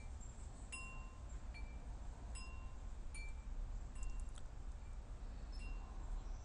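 Chimes tinkling now and then: scattered single ringing notes at several different pitches, over a faint steady low hum.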